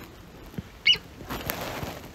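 A cat gives a single short, high mew just before the one-second mark. A soft rustling follows.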